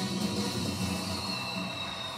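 Music playing from a television: the station-break bumper music of a news broadcast, steady and unbroken.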